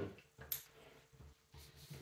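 Quiet handling of climbing rope and its hitch hardware, with one light click about half a second in.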